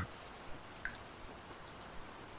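Faint, steady rain ambience with a few soft drips.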